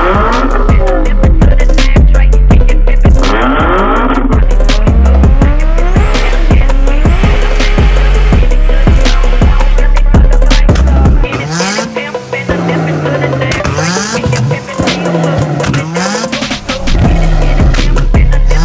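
Car engine and exhaust revving through gear changes, its pitch repeatedly rising then falling, mixed under a bass-heavy music track. About eleven seconds in, the music's beat drops away and the engine is heard alone through several revs. The beat returns near the end.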